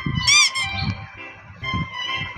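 Children's background music with a steady beat. About a quarter second in, a short, high, warbling sound effect plays over it.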